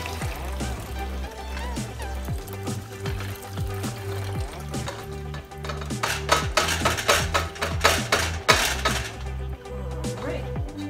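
Tea being poured from a stainless steel pot through a mesh strainer into a plastic pitcher, a steady splashing pour under background music with a repeating bass beat. A run of sharp knocks and clinks comes from about six to nine seconds in.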